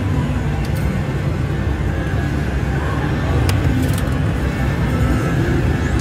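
Steady casino-floor din of slot machines and background music, with a few faint clicks.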